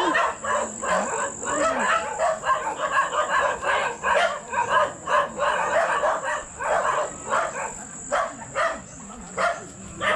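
Chickens clucking and small dogs yapping, a busy run of short, irregular calls.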